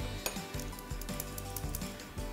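Light metallic clinks and rattling from a stainless mesh sieve and spoon, sifting flour and cocoa into a metal mixing bowl, a string of small sharp ticks over soft background music.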